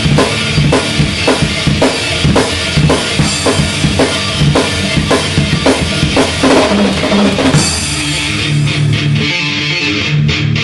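Acoustic drum kit played hard along with a backing track of distorted guitar and bass: a steady beat with heavy hits about twice a second over a wash of cymbals. About three-quarters of the way through the drumming stops and only the backing track's guitar and bass go on.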